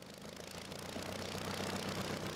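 Propeller engine of an early Curtiss hydroplane running steadily and growing louder.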